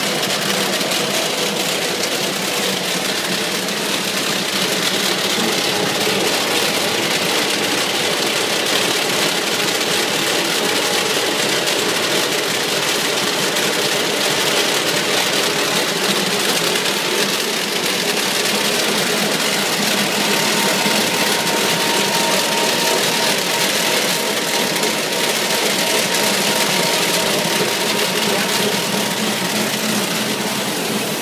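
Roll-fed square-bottom paper bag making machine (Nanjiang HD-200) running, a loud, steady mechanical whir as the kraft paper web feeds over its rollers. A faint steady whine joins about two-thirds of the way in.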